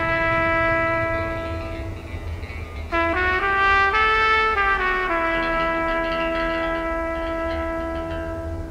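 Music: a slow solo trumpet melody in a Western-film style, with long held notes. One note fades away about two seconds in, a short phrase of changing notes enters about a second later, and a long held note follows from about five seconds.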